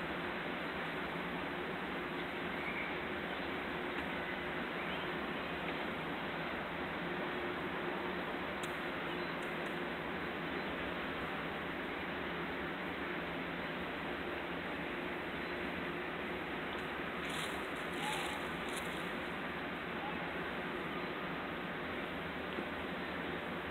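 Steady outdoor background noise, an even hiss and hum with no distinct source, with a few faint brief clicks about halfway through and again near the end.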